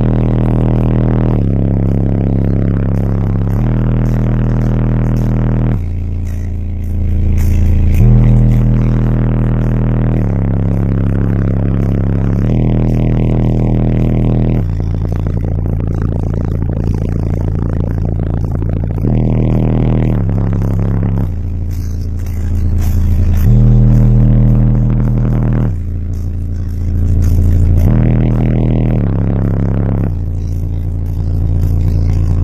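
Bass-heavy music played loud through two EMF Banhammer 12-inch subwoofers in a car's trunk box, with long low bass notes that step to a new pitch every couple of seconds.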